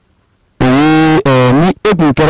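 A man's voice through a handheld microphone, starting about half a second in after a short pause, in long drawn-out syllables.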